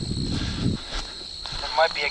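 Low rumbling noise on a head-mounted camera's microphone for the first part of a second, then a man's voice starting near the end. A faint steady high-pitched whine runs underneath throughout.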